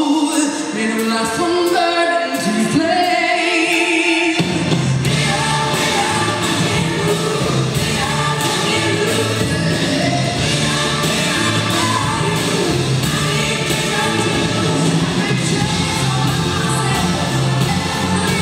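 Youth choir and orchestra performing a pop-song arrangement. Voices carry the first few seconds, then about four seconds in the full ensemble comes in with strings, a deep bass line and a steady beat.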